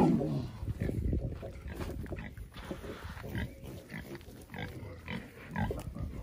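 Pigs making short, irregular calls while two female pigs fight.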